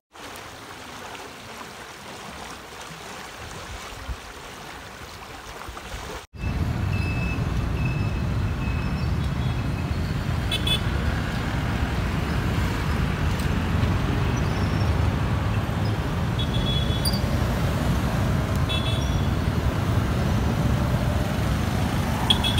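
A quieter steady outdoor hum for about six seconds, then road traffic noise from passing cars, a pickup truck and motorcycles, louder and steady, with several short horn toots.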